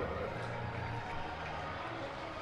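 Steady ballpark crowd noise from a televised baseball game, with no single event standing out.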